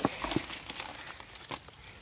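Dry leaves and twigs rustling and crackling, with a few sharp snaps.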